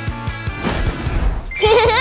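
Upbeat cartoon background music with a steady beat, a short swish about halfway through, then a cartoon character's voice near the end: a wavering, pleased-sounding vocal note that glides down in pitch.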